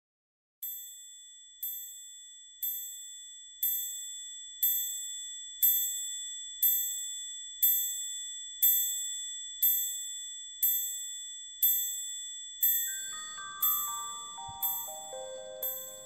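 A high, bell-like chime struck about once a second, about a dozen times, each strike ringing out and fading before the next. Near the end, a short run of lower chime notes steps downward.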